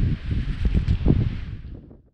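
Wind buffeting the microphone in uneven gusts, with crinkly rustling from the packed ultralight tent's stuff sack being handled. The sound fades out near the end.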